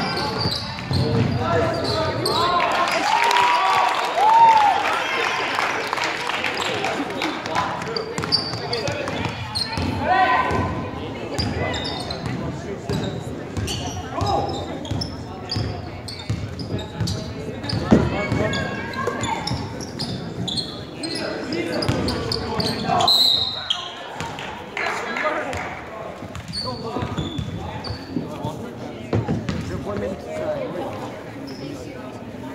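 Indoor basketball game: the ball bouncing on the wooden court among many short knocks, with players and onlookers calling out, all echoing in a large gym.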